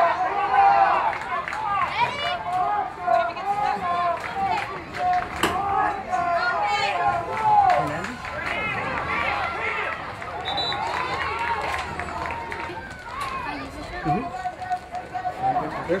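Many voices at a youth football game shouting and calling out over one another in the open air, with no single voice standing out.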